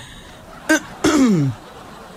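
A person's short non-speech vocal sounds: a brief catch about two-thirds of a second in, then a longer sound that falls in pitch, like a throat clear or the tail of a laugh, over faint broadcast hiss.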